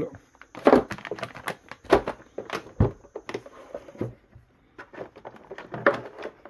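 Plastic bags of cables crinkling and rustling as they are handled and set down in a hard plastic carrying case. The sound is a run of irregular sharp clicks, with a dull knock near the middle.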